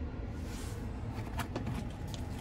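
A low, steady hum inside a vehicle cabin, with a few faint clicks.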